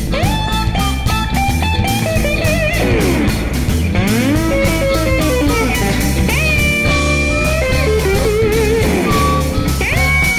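Electric guitar playing a blues solo: sustained notes bent up and down in pitch and held with a wavering vibrato, backed by the band's steady rhythm.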